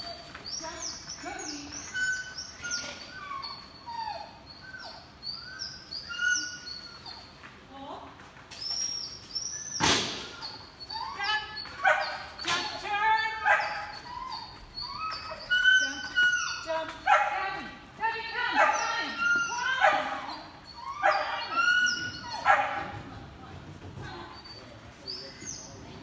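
A dog barking and yipping over and over in short high-pitched calls as it runs an agility course, busiest in the second half; a single sharp knock about ten seconds in.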